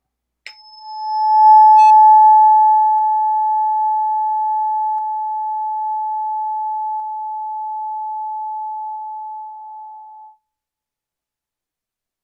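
A tuning fork struck once, ringing a single pure, steady tone with a faint high overtone that dies away within the first couple of seconds. The tone swells, then slowly fades, a second slightly lower tone joins in its later part, and it stops suddenly shortly before the end.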